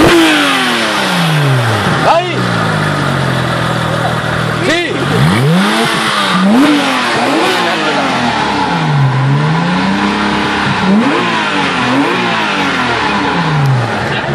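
Porsche 911 GT3 flat-six engine revved hard in a series of blips. Each rev climbs quickly and falls away slowly, the highest rev coming about five seconds in.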